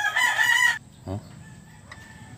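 A rooster crowing: one short, high call lasting under a second.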